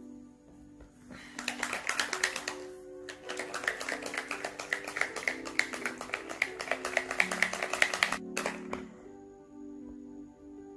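A correction pen being shaken, its mixing ball rattling in quick clicks about eight a second, with a short pause about three seconds in; soft background music plays throughout.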